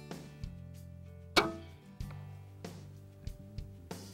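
Excalibur Matrix Mega 405 recurve crossbow fired once about a second and a half in: a single sharp crack with a brief ringing tail from the string and limbs. Background music with a steady low bass runs underneath.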